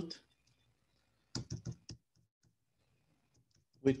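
Typing on a computer keyboard: a quick run of keystrokes about a second and a half in, with a few faint taps before and after.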